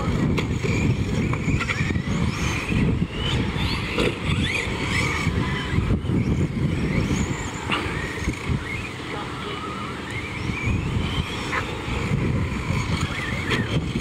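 Electric motor of a Tekno RC short course truck, whining up and down in pitch as the throttle is worked through the dirt track's jumps and turns, over a steady low rumble.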